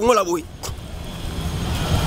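A motor vehicle's low rumble and road noise on the street, growing louder toward the end, after a brief word of speech at the start.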